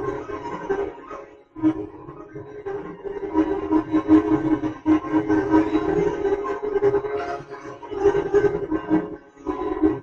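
Hindustani melody on a plucked string instrument, played as long sustained notes, with short breaks about a second and a half in and near the end.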